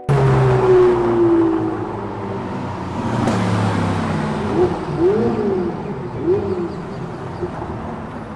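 Sports cars driving past at close range on a paved street. A red Ferrari convertible's engine comes in loud, and its note falls in pitch over the first couple of seconds as it passes. Then a second car goes by, with a few short tones in the middle that rise and fall in pitch.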